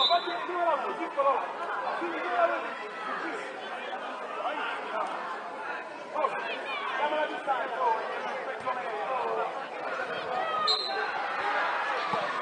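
Background chatter: several voices talking over one another at once, none of them standing out.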